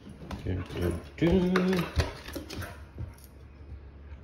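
Bare footsteps going down hard wooden stair treads: soft thuds with a few sharp clicks and knocks. About a second in, a brief wordless voice-like hum is held for under a second.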